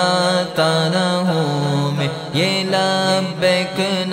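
A male vocalist sings a drawn-out melodic line of an Urdu devotional kalam over a layered vocal drone of backing voices, with held notes that slide in pitch about halfway through.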